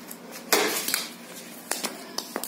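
A single sharp, loud clack of a plastic cricket bat hitting the ball, with a brief hollow ring after it, about half a second in; a couple of lighter clicks follow near the end.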